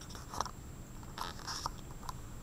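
Paper page of a hardcover picture book being turned by hand: soft crackly rustles about half a second in and again in the second half.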